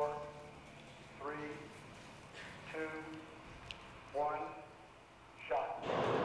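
A man's voice over a loudspeaker continuing a launch-style countdown, one number about every second and a half, over a low steady hum. Near the end a sudden rush of noise starts.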